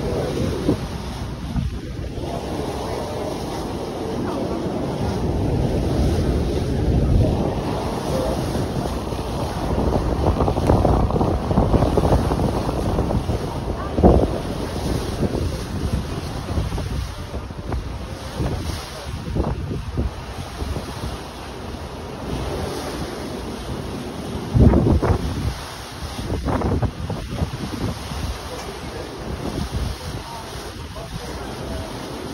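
Wind buffeting the microphone on the deck of a moving ferry, over the rush of water alongside the boat. The rushing comes and goes in gusts, with a couple of sharper blasts partway through.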